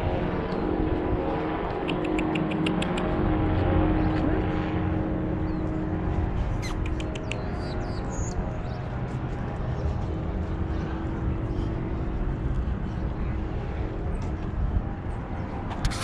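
A steady mechanical drone with an even hum runs throughout. A quick run of faint ticks comes about two seconds in.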